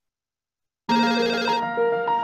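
Silence, then about a second in a telephone ringtone starts suddenly over music, its steady tones changing pitch about half a second later.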